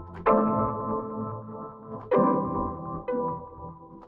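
Chords played on the 'Off The Roads' preset of the Kontakt 'Stacks' software instrument, each struck and left to ring out and fade: one shortly after the start, one about two seconds in and a lighter one about three seconds in. The sound carries lo-fi artifacts built into its samples.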